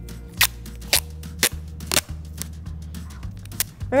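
Masking tape pulled and torn from the roll in a series of short, sharp rips, about two a second, then one more near the end.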